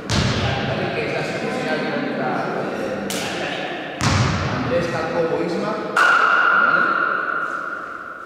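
Echoing sports-hall sound of a basketball game: players' unclear shouting and the thuds of the ball. A steady high tone, such as a whistle or buzzer, holds for about two seconds near the end.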